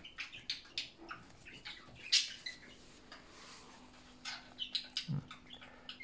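Faint, scattered rustles and small clicks of young hamsters feeding at their food bowl and shuffling through wood-shavings bedding, with one soft low knock about five seconds in.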